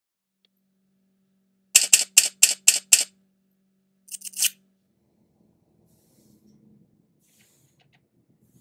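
Camera shutter clicks as an intro sound effect: six sharp clicks, about four a second, then a quicker burst of three, over a faint low steady hum.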